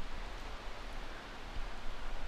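Light rustling as kitchen tongs lay green beans onto stuffing, over a steady hiss.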